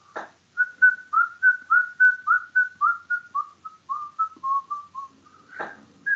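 A person whistling a quick run of short notes, about four a second, each a little lower than the one before, one note to each stroke of a zigzag being drawn.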